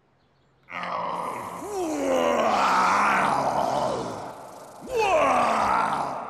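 Cartoon nightmare monster groaning: a long, loud groan begins about a second in, and a second groan comes near the end, falling in pitch.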